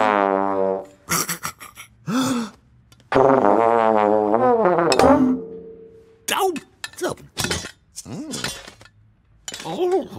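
Animated-cartoon soundtrack of wordless, wavering vocal sounds in a comic voice, each held for one to two seconds, with short comic sound effects and clicks in between and music underneath.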